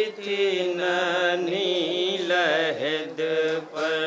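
Men's voices chanting a noha, a Shia mourning lament, in long drawn-out melodic lines with held notes and slow bends in pitch.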